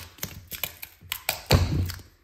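A strip of duct tape being handled and folded by hand on a laminate floor: a string of short taps and crinkles, with a louder thump about one and a half seconds in.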